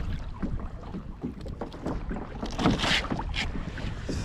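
Water slapping and lapping against a plastic kayak's hull, with wind rumbling on the camera microphone and small knocks of gear; a brief splash about three seconds in.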